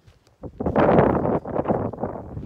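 Wind buffeting the phone's microphone, coming in loudly about half a second in and rumbling on in gusts.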